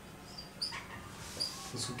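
Whiteboard marker squeaking on the board as a word is written: several short, high squeaks in the first second and a half.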